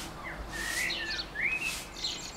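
Wild birds singing in the background: a run of short, high chirps and two sliding whistled notes, about half a second and a second and a half in.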